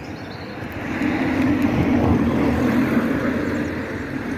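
A vehicle passing by, its noise swelling about a second in and fading away toward the end.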